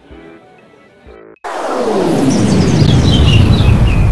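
Soft background music, cut off about a second and a half in by a sudden, loud, noisy sound effect whose pitch falls steadily as it builds, lasting about three seconds.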